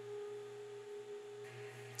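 Faint, steady hum of food-processing conveyor machinery: a held mid-pitched tone over a low drone.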